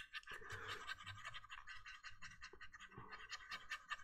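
Faint, quick, even scratching of a paintbrush being dry-brushed over the hard plastic hull of a model tank, with light, rapid strokes.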